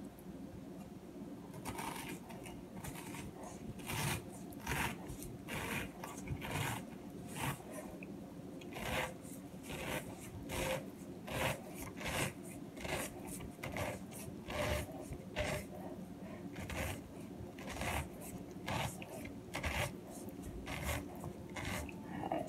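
Stainless-steel pineapple corer being twisted down through a whole pineapple: a long run of short rasping strokes, about two a second, starting about a second and a half in, as the blade cuts through the fruit and rind.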